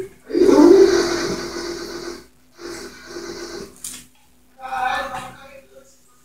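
A ladle stirring a thick soup in an aluminium pot, scraping the metal and sloshing the liquid. The stirring is loudest for about the first two seconds, then comes twice more, more briefly.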